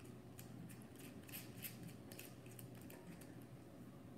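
Faint, irregular small clicks and ticks, several a second, from a small spinning reel being handled and turned.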